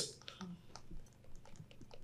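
Faint, scattered small clicks over quiet room tone.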